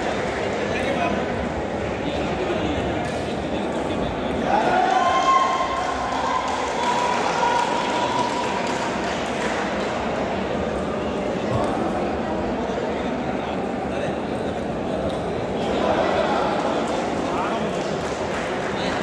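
Indistinct chatter of many voices echoing in a large indoor sports hall, with occasional light clicks of table tennis balls.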